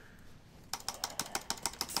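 Rapid, irregular clicking of keys on a laptop keyboard, starting under a second in after a near-quiet moment.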